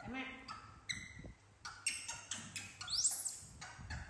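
Baby macaques making short high-pitched squeaks, with one loud rising squeal about three seconds in, among light taps as a green mango is handled on the tile floor.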